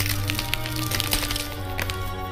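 Film score: a low steady drone with held tones, overlaid by many sharp clicks and cracks that are thickest in the first second.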